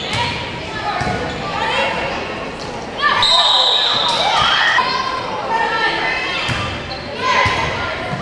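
Volleyball rally in a gym: the ball is struck several times with sharp hits, amid shouts from players and spectators that echo in the hall. The voices get louder about three seconds in.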